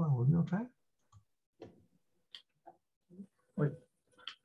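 A man's voice finishes a sentence about two-thirds of a second in; after it come a handful of faint, scattered clicks and taps from a computer keyboard and mouse, a little louder about three and a half seconds in.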